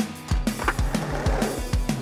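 Skateboard wheels rolling down a ramp, over a backing track with a steady drum beat.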